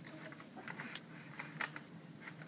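Faint rustling and a few soft clicks of brown paper-bag hand puppets being handled.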